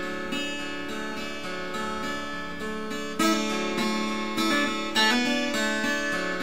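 Acoustic guitar in open D tuning, fingerpicked: open strings ring together while single higher notes change above them, with a firmer pluck about three seconds in.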